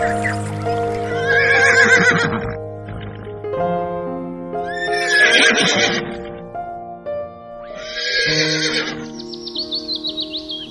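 A horse whinnies three times, each call lasting about a second, over background music with steady held notes.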